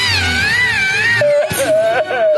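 An Ewok's high-pitched, wavering wail from the cartoon soundtrack, lasting about a second, with a steady held note of music after it.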